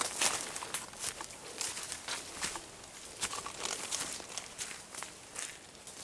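Footsteps through dense undergrowth: dry leaves rustling and twigs snapping in short, irregular crackles, loudest in the first second.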